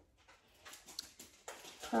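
A dog in the room making a string of faint, irregular clicks and taps.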